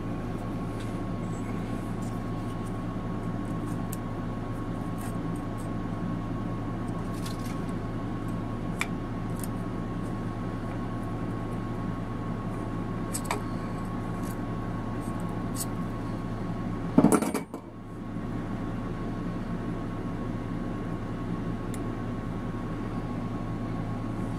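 Light metallic clicks and small scrapes as an air-compressor pump's aluminium cylinder head, valve plate and a metal blade tool are handled, over a steady low hum. A brief louder rustle comes about 17 seconds in.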